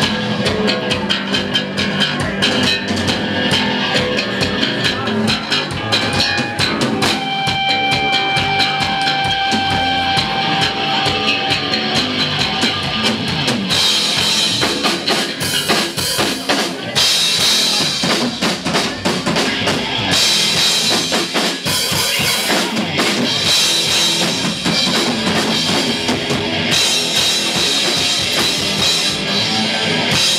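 Live rock band playing an instrumental stretch: drum kit and electric bass guitar. A held note rings out for a few seconds early on, and from about halfway through the cymbals crash steadily and the drumming grows heavier.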